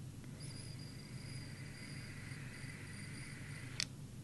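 A long draw on a vape through a loose-fitting drip tip on a Quasar rebuildable dripping atomizer: a thin, steady high whistle over soft airflow hiss, held for about three seconds, which the vaper finds really annoying and blames on the drip tip not fitting. A short click ends it just before the end.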